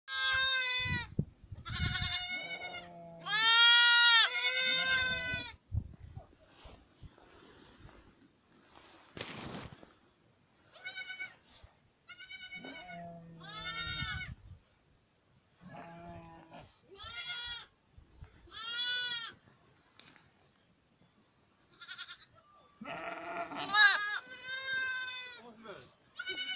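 Young lambs and goat kids bleating over and over in high, wavering calls, in bouts with short quiet gaps between, now and then two calling close together; a few lower calls are mixed in.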